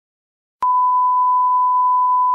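Steady test-tone beep at one unwavering pitch, the reference tone that goes with color bars, switching on with a click about half a second in and holding.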